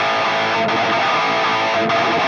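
Background music from a heavy rock track in a break where a distorted electric guitar plays on its own, without bass or drums. The full band comes back in about a second and a half after the break ends.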